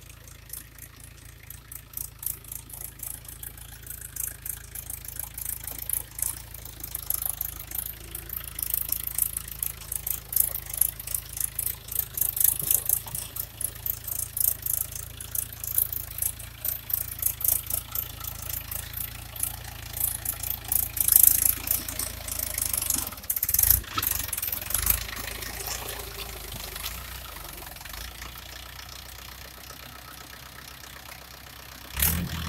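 Diesel tractor engine running steadily as the tractor churns through a flooded paddy field on steel cage wheels, with a fast, uneven crackle over it that grows louder as the tractor nears. Two heavy low thumps come about three-quarters of the way through.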